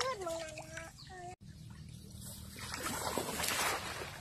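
A short pitched call in the first second, then water splashing and sloshing that grows over the last second and a half as a person wades through a flooded rice paddy.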